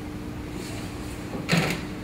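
Steady low room hum, with one short muffled knock or rustle about one and a half seconds in.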